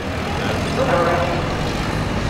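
Outdoor background noise with a steady low hum, and a person's voice briefly about a second in.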